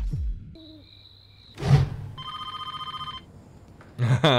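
A telephone ringing once: a single rapidly trilling electronic ring lasting about a second, coming after a short sustained tone and a sudden hit about a second and a half in.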